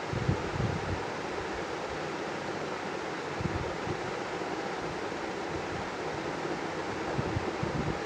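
Steady, even background hiss, with a few faint soft bumps near the start and middle.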